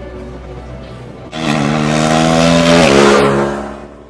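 Race car engine revving up as the car accelerates, over background music; its pitch climbs, drops once about three seconds in, then it fades out near the end.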